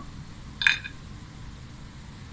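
A dried star anise dropped into a dry nonstick frying pan among whole spices: one brief light tap on the pan about half a second in.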